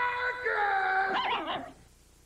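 A drawn-out, voice-like howl with a held note and then quick wavering pitch slides, ending a TV commercial's soundtrack. It cuts off about three-quarters of the way through, leaving near silence.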